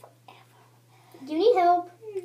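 A young girl's voice: a little whispering, then a short wordless voiced sound whose pitch rises and then falls, over a steady low hum.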